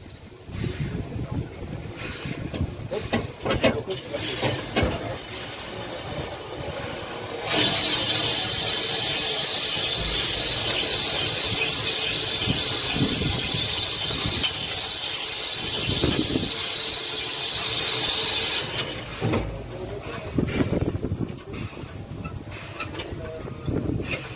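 Haine-Saint-Pierre steam locomotive standing with steam hissing. A loud steady hiss of escaping steam starts about seven seconds in and stops sharply about eleven seconds later, with irregular knocks and mechanical noise before and after it.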